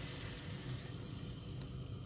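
Faint, steady background hiss and low hum with no distinct sound, and a single faint tick about one and a half seconds in.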